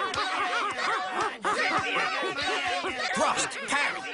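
Many overlapping high voices chattering and laughing at once, with short rising-and-falling cries piling over one another and no clear words.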